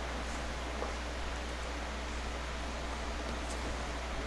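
Steady hiss with a constant low hum underneath: background noise with no distinct sound events.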